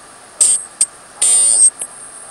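Submarine underwater telephone receiver giving short bursts of garbled, distorted transmission with a shrill high whistle over a steady electrical hum: a short burst about half a second in, a brief click, then a longer burst.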